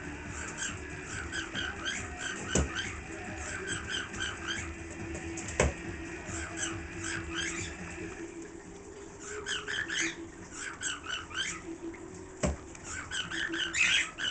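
Pet parakeet chattering in rapid, busy chirps and warbles, with a short lull a little past the middle. A few sharp knocks stand out, three in all.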